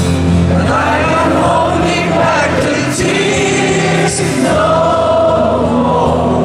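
Live music heard from among a stadium audience: a slow acoustic guitar ballad with singing.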